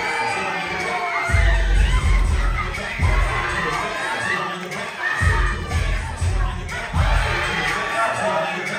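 A crowd of children shouting and cheering excitedly, many high voices overlapping. Underneath, the heavy bass of a music track drops out and comes back every couple of seconds.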